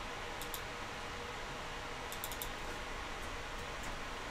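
A few faint computer mouse and keyboard clicks over a steady background hiss: one about half a second in, a quick cluster a little after two seconds, and one near the end.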